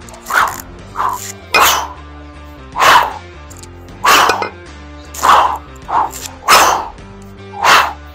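Sharp, forceful breaths, about nine in eight seconds, in rhythm with a man working two kettlebells through the long cycle clean and jerk. Steady background music plays under them.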